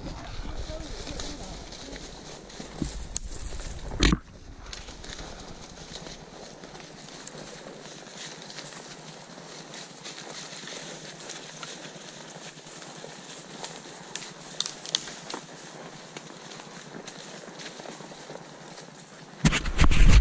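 Horses walking on a woodland trail, their hooves rustling and crunching through dry fallen leaves, with a single sharp knock about four seconds in.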